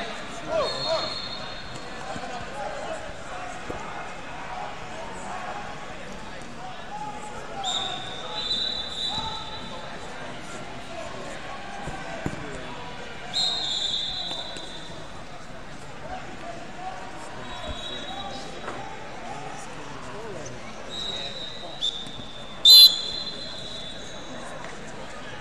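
Referee whistles sounding several times in short blasts of about a second each, over the steady shouting and chatter of a large wrestling hall. The loudest blast, sharp and close by, comes near the end. There are occasional thuds on the mats.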